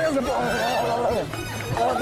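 Background music with women's high-pitched voices squealing and calling out over it.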